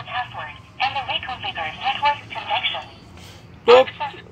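Speech: a voice talking in short phrases, with a brief pause shortly before the end.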